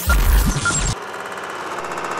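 Intro sound effects: a deep boom with a hiss in the first second, then a rapid, steady mechanical clatter like a film projector running.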